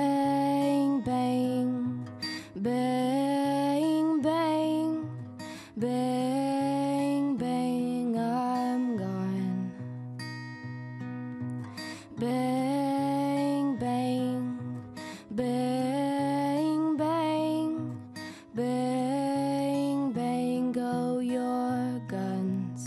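Acoustic guitar strumming chords under a sustained melody line played in repeated phrases of about three seconds each, with short gaps between phrases.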